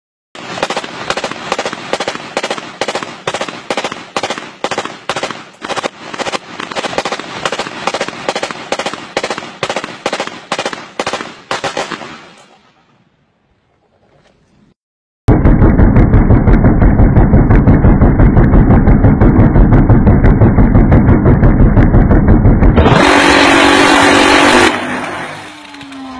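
Gunfire: a run of sharp shots at about two to three a second for roughly twelve seconds, then after a short pause a much louder, distorted burst of rapid continuous fire lasting several seconds.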